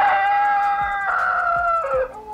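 A woman's long, high-pitched shriek, held for about two seconds and falling in pitch as it ends.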